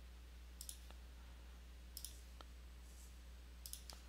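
Faint computer mouse clicks in three brief groups of one or two clicks, about a second and a half apart, over a low steady electrical hum.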